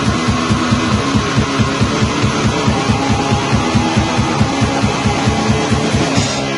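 Black metal band playing: distorted electric guitar over a drum kit hammering a fast, even beat of about four hits a second.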